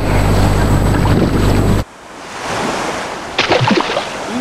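Steady low motor hum with heavy wind noise on the microphone, which cuts off abruptly about two seconds in. A quieter rush of water follows, then splashing and a brief shout near the end as a man jumps into the sea.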